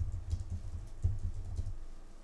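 Irregular low thumps with occasional faint sharp clicks, like handling or tapping close to the microphone.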